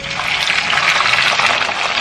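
Hot oil in a wok sizzling as battered, once-fried pork belly pieces are tipped in for their second fry. The hiss starts suddenly and holds steady and loud.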